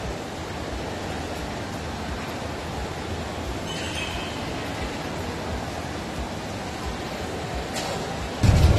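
Steady ambient noise of a large shopping-mall atrium: an even wash of distant crowd sound, with a brief faint higher sound about halfway through.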